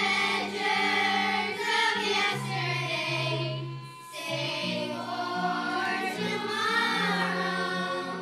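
A group of fourth-grade girls singing a song together as a choir, with a short break between phrases about halfway through.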